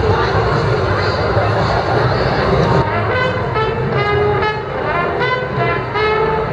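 Crowd chatter and street noise, then about halfway through a small street band of saxophones and other horns starts playing a run of short notes.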